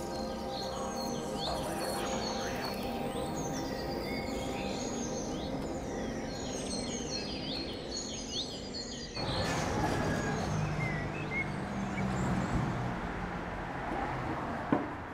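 Birds chirping over a sustained ambient music drone. About nine seconds in, the music cuts off abruptly, leaving steady city background noise with an occasional bird call.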